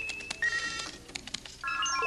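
Science-fiction computer terminal sound effect: electronic beeps with clicks. A held high tone is followed by shorter tones at lower pitches, then a chord of several tones sounds together near the end.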